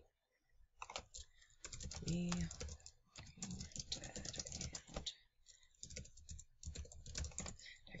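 Computer keyboard typing: quick runs of key clicks with short pauses as a search phrase is typed in, fairly faint.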